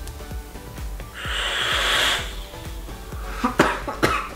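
A person blowing out a long breath of vape vapour about a second in, lasting just over a second, after a draw on nicotine e-liquid, then a short sharp cough-like catch near the end. Soft background music runs underneath.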